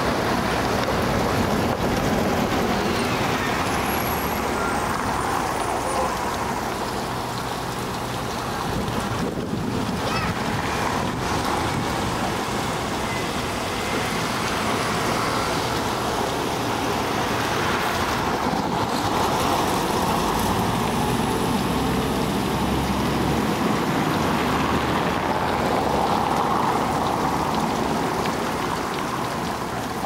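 Steady road traffic noise on a city street, with buses and cars running.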